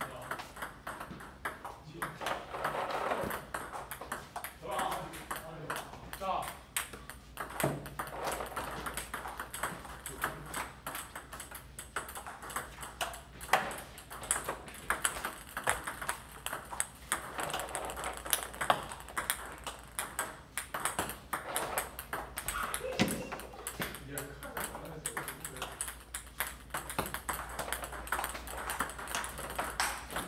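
Table tennis multiball drill: a quick, continuous run of ping-pong ball clicks as balls are fed from a box, struck by paddles and bounce on the table, several hits a second.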